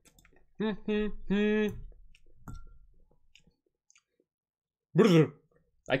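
A voice making three short wordless hums about a second in, then a louder vocal sound that falls in pitch near the end.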